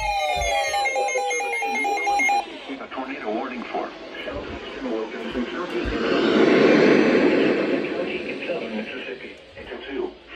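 Several NOAA weather alert radios sounding at once: steady and pulsing alert tones overlaid with gliding, siren-like tones. The tones cut off suddenly about two and a half seconds in. The radios' automated voices then start reading the tornado warning over one another.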